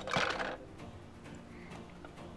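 Spring-loaded plastic canopy of a toy jet snapping open and its ejection seat popping out, a short plastic clatter in the first half second, then quiet.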